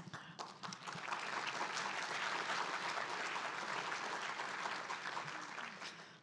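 Audience applauding in a large hall, swelling over the first second or two and tapering off toward the end.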